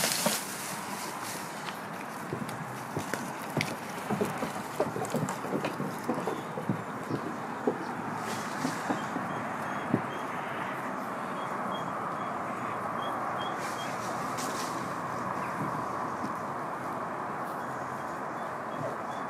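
Leafy branches rustling as an Alpine goat tugs at them, then a run of light, irregular knocks like goat hooves on wooden decking, fading into a steady outdoor background hiss.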